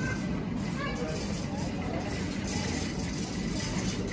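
Faint, indistinct voices over a steady low rumble.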